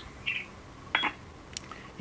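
Short electronic beeps and a click from a Barrett 4050 HF transceiver in the pause between transmissions: one brief high beep near the start and a sharper click-and-beep about a second in, over faint hiss.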